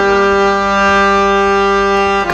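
Harmonium holding one long, steady reedy note between sung lines.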